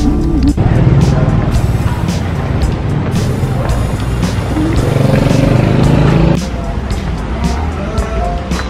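Background music with a steady beat. Its sound changes abruptly about half a second in and again about six seconds in.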